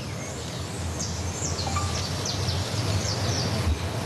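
Birds chirping outdoors, many short high calls that fall in pitch, over a steady background noise with a low hum.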